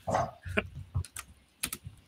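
Typing on a computer keyboard: a scatter of quick key clicks, with a few duller, louder knocks in the first second.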